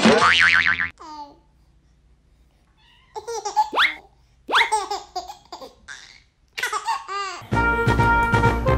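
A baby laughing in three short bursts of high giggles. A loud wobbling tone about a second long comes at the very start, and music starts just before the end.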